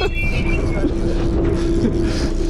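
Fishing boat's engine running steadily: a constant low hum over a dense rumble. A short high tone sounds at the very start.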